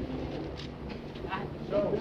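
Faint, indistinct voices over a low background of outdoor noise, with a short stretch of speech near the end.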